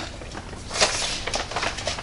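Plastic bag rustling and frozen breaded chicken pieces being set down on a wire oven rack: a few short crinkles and light taps.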